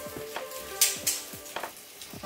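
Sausages sizzling in a frying pan on a gas camp stove, with a brief sharper hiss a little under a second in, under background music.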